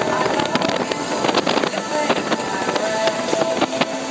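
Personal watercraft engine running steadily while the craft moves through flooded grass, with scattered short clicks over the engine noise.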